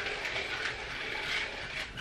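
Weighted smart hula hoop spun round a man's waist: its weighted ball on a cord runs round the plastic track of clip-together links with a steady mechanical clatter.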